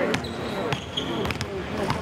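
Basketballs bouncing on a hardwood court: four or five sharp thuds spread unevenly across two seconds, with a voice heard underneath.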